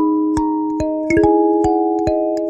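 Kalimba (thumb piano) with a wooden body, its metal tines plucked by the thumbs in a slow, gentle melody. A new note sounds about every half second, each ringing on under the next.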